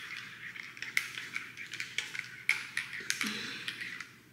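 Small gold metal spoon stirring coffee in a ceramic mug, clinking irregularly against the inside of the mug with a light ring.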